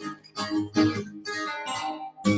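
Acoustic guitar strummed, a run of chords struck in quick succession with the strings ringing between strokes.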